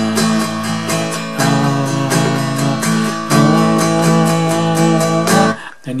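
Acoustic guitar strummed in steady, quick chugging strokes on an A chord. The chord voicing changes twice, about a second and a half in and again past the middle, and the strumming stops just before the end.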